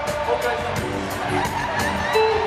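Live band playing R&B, with pitched instrumental lines, some of them sliding, over a steady beat of about four strikes a second.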